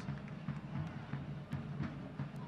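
Soccer stadium ambience during live play: low crowd noise under a steady, low drumbeat.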